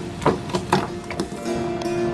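Rice cake sticks dropped by hand into a pot of boiling water: about four quick splashes in the first second and a half, the first the loudest, over background music.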